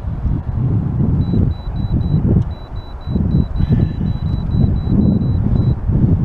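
Wind buffeting the microphone in uneven gusts. A thin, high electronic beep repeats about three times a second from about a second in until shortly before the end.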